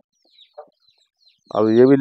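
Faint, scattered chirping of birds with one short call about half a second in, then speech starting near the end.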